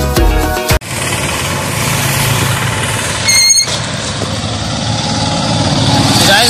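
Background music cuts off under a second in, giving way to road traffic noise. A short, high-pitched beep, like a vehicle horn, sounds about three seconds in.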